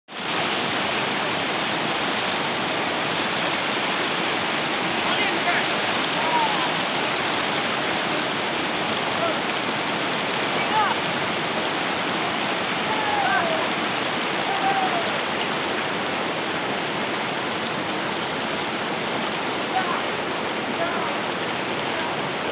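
Loud, steady rushing noise of flowing water, with a few faint short calls heard over it.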